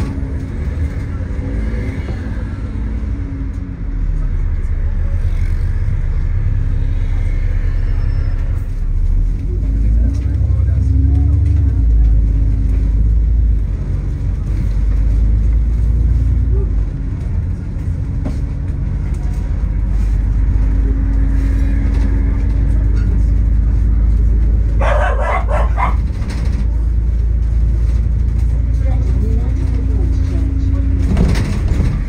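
Double-decker bus in motion, heard from inside the top deck: a loud, steady low rumble of drivetrain and road noise, with a hum that rises and falls as the bus speeds up and slows. A brief, sharper burst of sound comes near the end.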